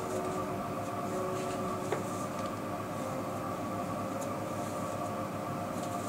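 A steady machine-like hum made of several steady tones, with faint rustles of hair being handled and a small click about two seconds in.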